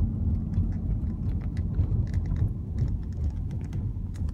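Car driving slowly, heard from inside the cabin: a steady low rumble of engine and tyres on the road, with scattered faint clicks.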